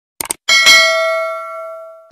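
Subscribe-button animation sound effect: a quick double click, then a notification-bell ding that rings with several pitches at once and fades over about a second and a half.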